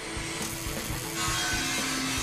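A power tool in a metal workshop making a steady hissing, grinding noise that starts about half a second in and grows stronger a little after, over background music.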